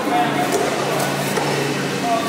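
Indistinct background voices of people talking, with a few faint knocks.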